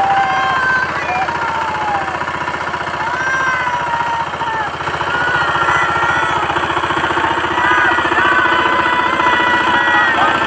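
Single-cylinder diesel engine of a BST Shakti 130 DI power tiller running steadily with a rapid, even chugging pulse as the tiller drives along. Voices call out over it.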